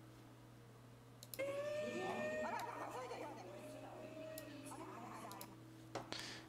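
A woman's voice, faint and unhappy, heard in the played tsunami footage from about a second and a half in until near the end, over a steady low electrical hum.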